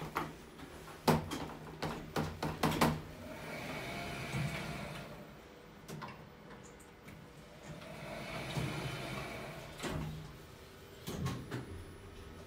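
OTIS Gen2 lift: a run of sharp clicks from the car's button press and the controller, then the automatic sliding doors running twice, each a smooth whirring swell of a few seconds. A few more clicks come near the end.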